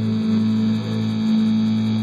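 Music: a held low chord ringing steadily.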